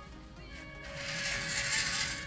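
Background music, with the WPL B36 RC truck's small electric motor and gearbox running as it drives forward, the drive noise rising about a second in.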